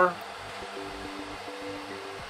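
A small cooling fan running steadily, with a faint low two-tone hum that comes in about half a second in and drops out briefly around the middle.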